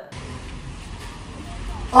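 Steady outdoor background noise: a low rumble with an even hiss. A loud amplified voice comes in at the very end.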